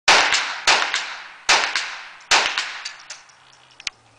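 Four gunshots fired in quick succession, spaced well under a second apart, each trailing off in a long echo under the range's metal roof. Fainter shots or echo pops follow near the end.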